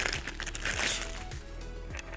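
Clear plastic packaging crinkling as a wrapped item is handled, loudest from about half a second to a second in, over background music with a steady beat.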